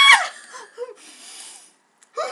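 A woman's loud, high-pitched shriek at the very start, falling away within a moment, followed by faint breathy laughter.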